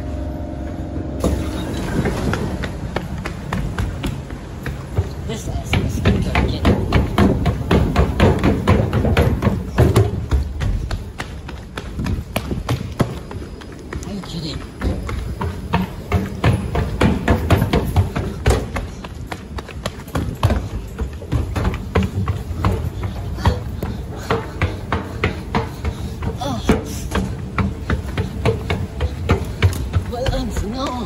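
Fast footsteps of someone running on hard floors and escalator steps, a quick regular series of thuds, heaviest about six to ten seconds in.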